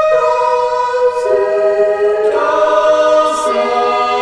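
Layered voices singing sustained choir-style harmony, the chord changing about once a second with the lowest part stepping down. No drums.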